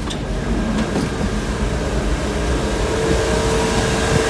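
Steady shipboard machinery and ventilation noise: a low hum under a steady tone that grows a little louder over the last couple of seconds, with a light knock or two near the start.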